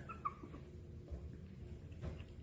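Shih Tzu puppy whimpering faintly: a few short, high whines in the first half-second.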